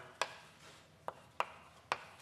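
Chalk tapping and scraping on a blackboard as a formula is written: about four sharp, irregular clicks.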